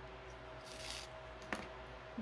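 Quiet handling of a cotton crochet cord and a wooden bead over a faint steady hum: a soft hiss about two-thirds of a second in and a single small click about a second and a half in.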